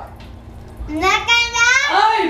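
A young boy yelling in a high, drawn-out voice with a wobbling pitch, starting about a second in.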